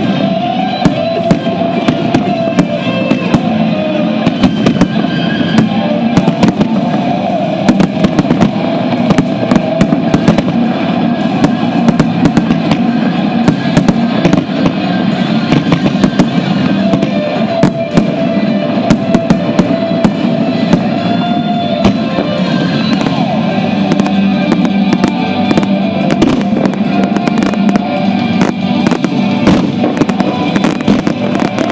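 Aerial fireworks shells bursting in quick succession, many sharp bangs throughout, over music with sustained tones.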